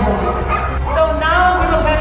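Croatian sheepdogs yipping and whining in high cries that slide up and down in pitch.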